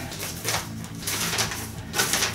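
A folded sheet of paper being unfolded and handled, with irregular crinkling rustles.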